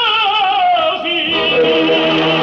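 Operatic tenor with orchestra in a 1950s recording: the tenor finishes a long high note with wide vibrato and drops down in pitch, and about a second in the orchestra comes in with a sustained chord.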